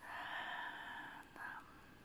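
A woman's breathy whisper lasting about a second, then a short breath, over a faint quiet background.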